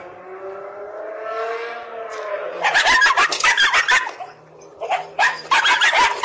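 A small white dog barking in rapid, loud volleys from behind a metal gate. Before the barking, during the first two seconds or so, a drawn-out cry rises and then falls.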